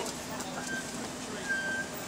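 Street traffic on a wet road: a steady hiss with a low steady hum under it, and a couple of brief high-pitched tones, the longer one about one and a half seconds in.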